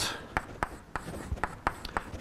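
Chalk writing on a blackboard: a series of short, irregular taps and scratches as the chalk strikes and drags across the board.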